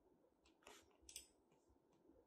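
Near silence: room tone with two faint computer-mouse clicks about a second in.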